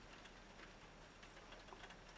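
Near silence with a few faint, irregularly spaced light ticks as small folded card model road signs are set down on a paper sheet.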